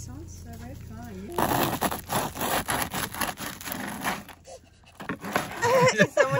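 Bread knife sawing through the hard crust of a crusty loaf on a wooden board: a run of crackling, scraping strokes lasting about three seconds, starting after a quieter first second or so. A voice comes in near the end.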